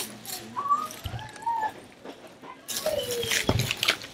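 Camera handling noise, bumps and rustling as the camera is moved, loudest near the end, with faint whistle-like tones gliding up and down in the background.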